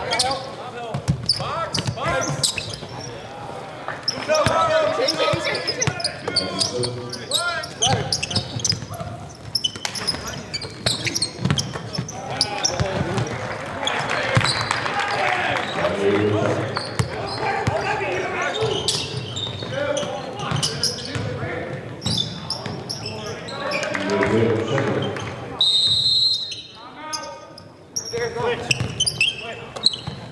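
High school basketball game in a gym: the ball bouncing on the court among many short knocks, amid players' and spectators' voices and shouts. A short, high whistle blast comes near the end.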